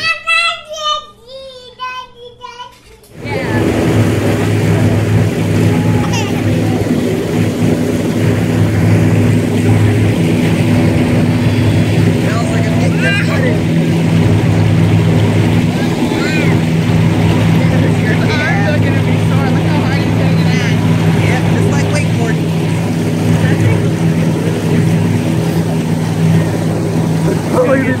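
Boat outboard motor running steadily at cruising speed; it comes in abruptly about three seconds in, after a few seconds of laughter.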